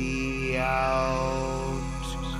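Pre-recorded electronic orchestral music: sustained, drone-like chords over a low pulsing note, the chord shifting about half a second in.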